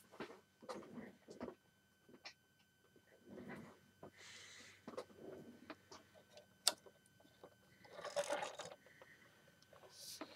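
Light plastic clicks and brief rustles from a Lego Hero Factory figure and its ball launcher being handled, with one sharper click about two-thirds through as the hand works the ball at the launcher.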